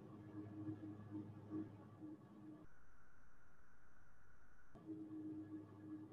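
Near-silent pause with a faint steady low hum. For about two seconds in the middle the hum cuts out and a faint steady high electronic tone takes its place.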